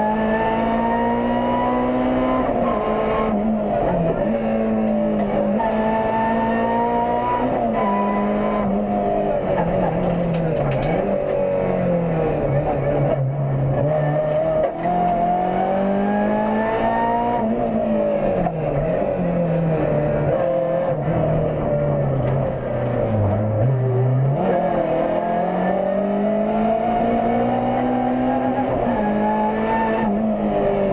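Renault Clio Sport rally car's engine heard from inside the cabin at stage pace. The revs climb in long rising sweeps and drop sharply at each upshift, and several times fall away deeply as the car brakes and changes down for a corner before climbing again.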